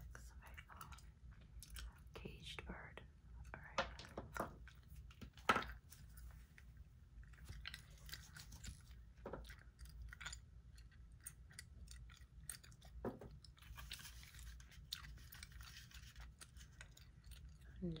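Gum chewing close to the microphone, quiet: a steady run of small wet clicks and smacks, with two louder sharp clicks about four and five and a half seconds in.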